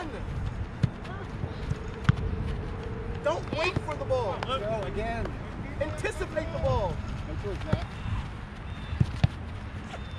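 Distant shouts and calls from players and sideline spectators at a youth soccer match, loudest a few seconds in, over steady low background noise outdoors. A few sharp thuds, typical of a soccer ball being kicked, come about a second in, at two seconds, and twice near the end.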